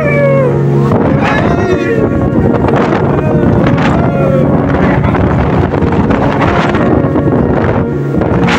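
Speedboat running fast over the sea, with water spray rushing past the hull and wind buffeting the microphone, under people's voices.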